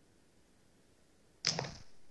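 Near silence, broken by one brief swish about one and a half seconds in.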